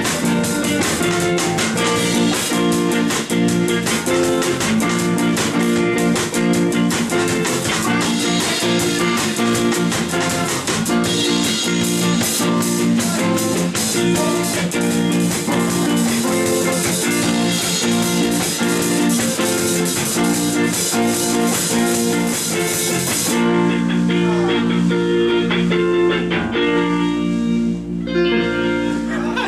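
Rock band playing an instrumental number on drum kit, bass guitar and Fender Stratocaster electric guitars. About 23 seconds in the drums and cymbals drop out, leaving the guitars and bass playing on.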